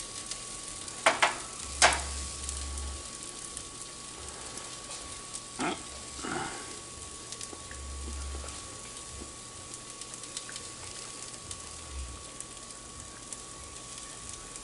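Diced sweet potatoes, onions and red beans sizzling steadily in an oiled cast iron frying pan. A few short clicks come about a second in, near two seconds and again around six seconds.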